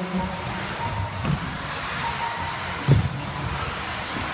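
Small electric radio-controlled buggies running on an indoor carpet track: a steady mix of motor whine and tyre noise, with a single thump about three seconds in.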